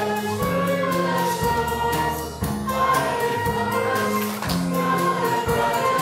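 Congregation singing a worship song over instrumental accompaniment, with long held notes and chords that change about every second.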